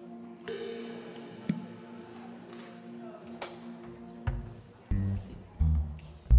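Live worship band playing softly between songs: held chords ring under two sharp, bright hits, then loud low thumps come in over the last two seconds as the next song gets under way.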